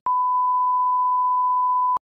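The colour-bars test tone: one steady, pure beep at a single pitch, held for almost two seconds and cut off suddenly.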